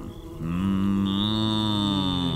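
Cartoon yak giving one long, low moo-like groan, joined about a second in by a thin, steady high whine.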